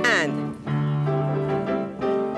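Piano accompaniment for a ballet class, with held bass notes and chords. Right at the start a woman's voice gives a short call that falls sharply in pitch.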